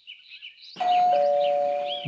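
Electric doorbell chiming a two-note ding-dong about three quarters of a second in: a higher note, then a lower one, both left ringing.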